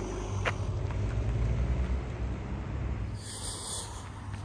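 Steady low rumble of vehicle engines and road traffic on a busy road, with a brief hiss near the end.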